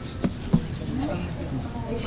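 Low, indistinct talk with two short sharp knocks in the first second.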